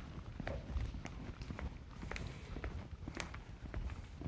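Footsteps of several people walking forward, a quiet, uneven series of thumps.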